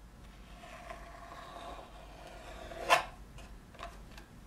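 Sculpting tools handled on a wooden work board: a faint scraping, then one sharp click about three seconds in as a tool knocks on the wood, and a lighter click just before the end.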